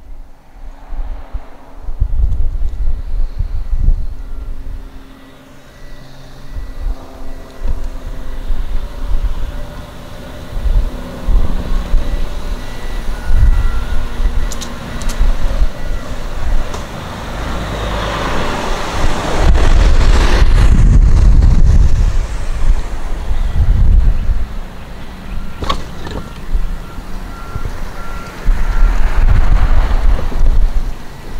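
Wind buffeting the microphone in gusts, loudest about two-thirds of the way through and again near the end, over the faint hum of a power chair's drive motors as it travels across pavement. Faint repeated beeps come and go.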